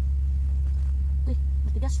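A steady low hum or rumble that never changes, with a short spoken word near the end.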